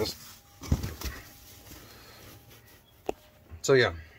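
Handling noise from a phone being moved and set back in place: a low bump about a second in, faint rubbing, and one sharp click near the end.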